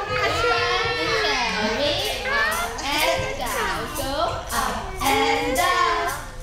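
Overlapping voices of mothers and babies: chatter, laughter and baby babbling, turning near the end into women singing a nursery rhyme together.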